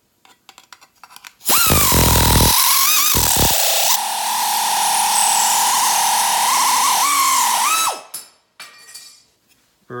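Central Pneumatic 16-gauge pneumatic nibbler running on compressed air and cutting thin sheet steel: a loud high whine over steady air hiss, its pitch dipping and rising a little as it bites. It starts about one and a half seconds in, after a few light handling clicks, and cuts off about two seconds before the end.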